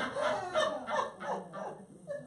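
Laughter in short, choppy bursts, away from the microphone, fading near the end.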